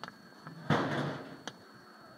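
A single sudden knock or clatter about two-thirds of a second in, fading over about half a second, with fainter sharp clicks at the start and near the end.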